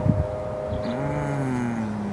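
A man's drawn-out hummed "mmm", low and sliding slowly down in pitch, starting about half a second in. A steady high tone sounds underneath it.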